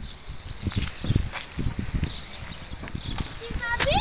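Irregular low thuds and rumble, with a child's short vocal sound rising in pitch near the end.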